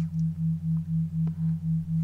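Low electronic sine tone pulsing on and off about four times a second over a steady lower drone: a brainwave-entrainment (isochronic) tone bed.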